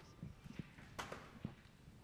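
Faint, scattered knocks and taps from people moving about a quiet room, four or so in two seconds, the loudest about halfway through.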